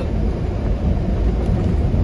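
Steady low rumble of engine and road noise inside the closed cab of a Freightliner Cascadia semi truck cruising down the road with the windows up.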